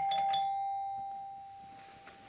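A doorbell chime: one sudden ring whose tone fades away over about a second and a half.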